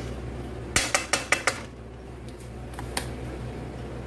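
Spatula knocking and scraping against a metal wok while stirring a creamy sauce, with a quick run of five or six clinks about a second in and a few single taps later.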